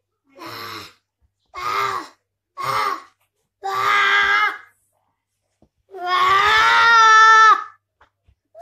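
A toddler boy screaming in play: four short cries that grow louder, then one long, loudest scream about six seconds in.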